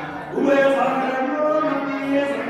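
A man chanting Hindu mantras into a microphone, holding each note on a steady pitch and stepping between notes, with a short break about a third of a second in.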